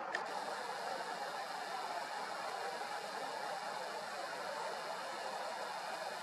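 Steady faint background noise, an even hiss, with one short click just after the start.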